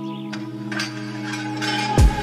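Calm instrumental background music with long held tones, and a few short knocks in the second half.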